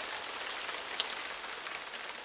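A steady hiss like rain falling, with faint scattered ticks and a couple of brief high blips about a second in.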